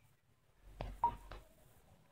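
A few faint taps with one short high beep about a second in, from a phone being handled and its screen tapped during a pause in speech.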